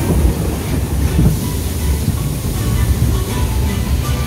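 Log flume boat being hauled up the lift hill on its conveyor, a steady low mechanical rattle and clatter.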